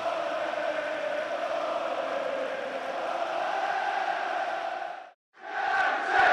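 A football stadium crowd of supporters chanting together in one long sustained song. It cuts out briefly about five seconds in, then comes back louder.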